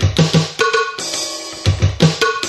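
E-mu Drumulator drum machine playing its factory-bank drum sounds in a repeating pattern. Deep bass drum hits at the start and again near the end, with shorter drum hits and a ringing tone in between.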